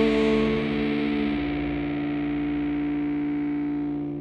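Distorted electric guitar holding the last chord of a rock song and letting it ring out. The higher notes die away in the first second or so while the low notes keep sounding, slowly fading.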